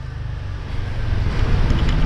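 Low rumble of road traffic on a city street, growing steadily louder, as of a vehicle approaching.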